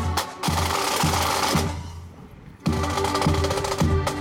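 Accordion band playing a march on accordions with snare and bass drums keeping a steady beat. A little past halfway the music dies away, and under a second later the band comes back in sharply on the drums and chords.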